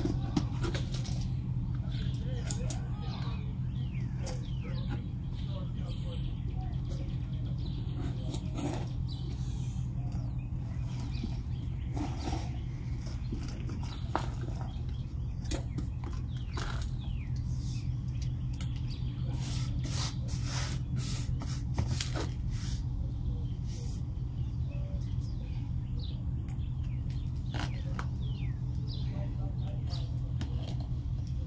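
Plastic jug being handled while a tomato plant is set into it: scattered light crinkles, knocks and rustles over a steady low hum.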